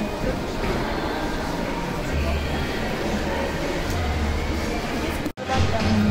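Steady store ambience with background music carrying low bass notes, broken by a brief sudden dropout near the end.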